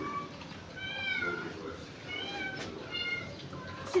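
A six-month-old German Shepherd puppy whining: four or five short, high-pitched whines, the longest about a second in and falling in pitch at its end.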